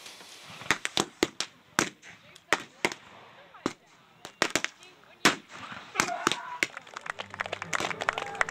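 An irregular series of sharp gunshot reports, about twenty over six seconds and some in quick pairs, from black-powder guns firing blanks in a staged battle display.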